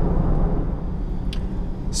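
Steady low road and tyre rumble inside the cabin of a 2022 Jeep Grand Cherokee cruising at road speed, with a faint tick about a second and a half in.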